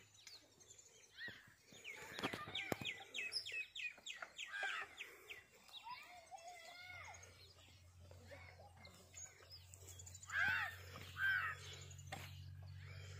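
Birds chirping and calling in the open countryside, with a quick run of chirps about two seconds in and two louder calls near the end, over a faint low hum.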